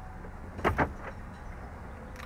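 Two quick mechanical clicks from the truck's column gear shifter being moved out of reverse, over the low steady hum of the idling truck cabin.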